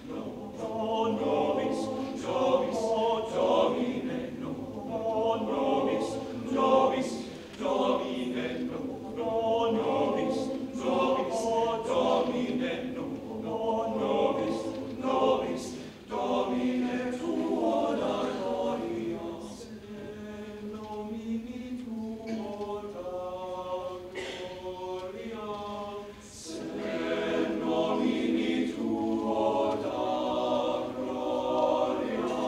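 Male choir singing a cappella. The singing drops to a softer passage about two-thirds of the way through, then swells louder again near the end.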